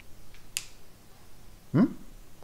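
Low room tone broken by one short, sharp click about half a second in. Near the end a man gives a brief rising, questioning 'hm?'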